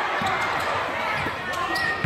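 Basketball being dribbled on a gym's hardwood floor, several bounces about half a second apart, over the steady chatter of a crowd in the stands.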